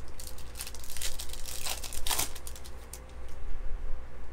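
Clear plastic wrapping on a sealed trading-card pack crinkling and tearing as it is opened by hand, a run of crackles loudest about two seconds in.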